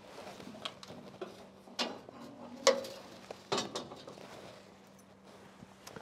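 Metal clicks and knocks as the bottom hatch of a Claas Trion combine's grain elevator is unlatched and opened by hand: a few sharp knocks about a second apart among quieter rattles.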